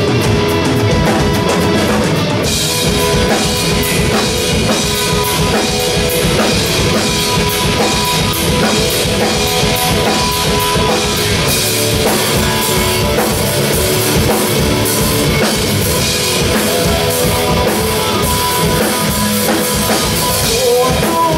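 A live rock band playing at full volume: electric guitars over a steadily beating drum kit.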